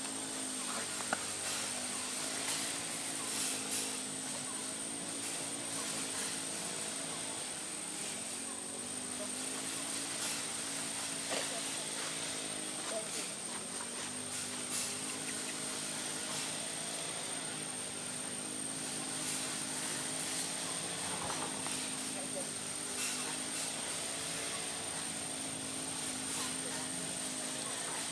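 A distant motor engine droning continuously, its pitch wavering slowly up and down, over a steady high whine.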